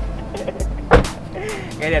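A car door shutting with a single solid thump about a second in, among a few lighter clicks of door handling, over background music.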